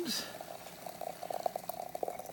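Freshly boiled water softly bubbling and crackling in rapid, irregular little ticks.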